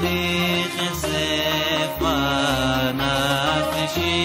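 A cantor singing a piyyut over instrumental accompaniment, the melody winding through wavering, ornamented runs about halfway through, over a bass line whose notes change about twice a second.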